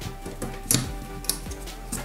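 Background music with steady tones and a light ticking beat.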